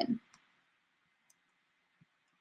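Near silence: room tone with a couple of faint, brief clicks, one just after the start and one at the very end.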